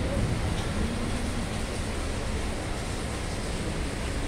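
Heavy rain falling: a steady, even hiss that holds at one level throughout.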